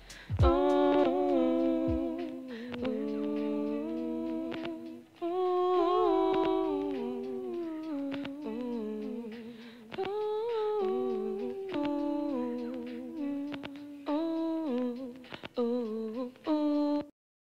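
A voice humming a slow melody with no accompaniment, in phrases a few seconds long with short breaks between them. The drum beat has dropped out.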